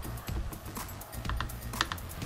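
Makeup brush working in a pressed-powder eyeshadow palette: a few light clicks and taps, the sharpest near the end, over quiet background music.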